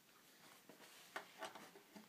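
Near silence: room tone with a few faint clicks in the second half, a hand screwdriver's tip being fitted to the neck-plate screws of a Stratocaster.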